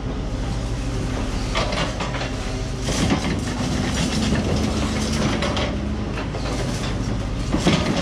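A mini excavator's bucket pounds a pile of scrap steel rebar, striking about a second and a half in, again about three seconds in, and once more near the end. Excavator diesel engines run steadily underneath.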